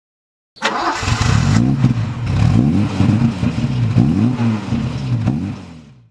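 A car engine comes in suddenly and is revved up and down several times, the revs rising and falling in quick blips, then fades out near the end.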